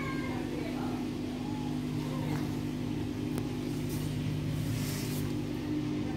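Samsung WF80F5E0W2W front-loading washing machine running its spin cycle: the drum turning with a steady motor hum. A short meow-like call is heard at the very start.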